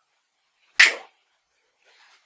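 A single short, sharp burst of hissing noise a little under a second in, fading within a quarter second.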